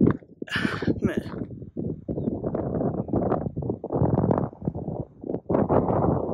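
Wind buffeting a phone's microphone in gusts: a loud, rough low rumble that sets in about two seconds in, after a single spoken word.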